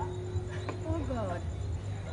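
A quiet lull on a band's stage: a held instrument note rings on and slides down in pitch about a second in, over a steady low hum, with a few faint voices.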